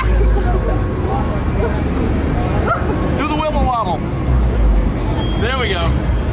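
Busy city street traffic: a steady low rumble, with two short high-pitched wavering calls about three seconds in and again near the end.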